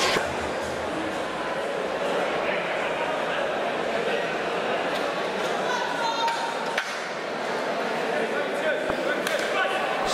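Steady, indistinct chatter of a seated crowd in a large hall, with individual voices rising faintly here and there.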